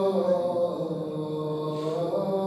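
A man's solo voice chanting a manqabat in Gilgiti (Shina), held in long, drawn-out notes whose pitch shifts slightly about a quarter of the way in.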